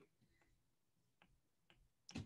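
Near silence, broken by three faint short clicks.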